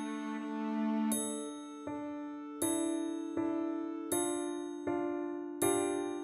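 Ensemble music: a triangle struck about every second and a half, ringing high over sustained clarinet and cello notes. From about two seconds in, new notes enter on a steady beat about every three-quarters of a second.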